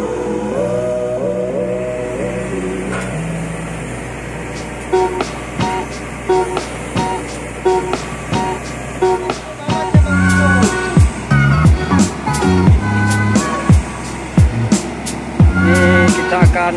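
Background music: a melodic passage, with a steady drum beat coming in about five seconds in and a heavier, bass-driven beat from about ten seconds.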